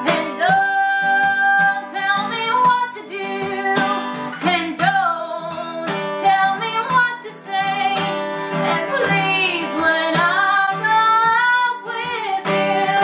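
A woman singing a melody over a strummed acoustic guitar, played live together.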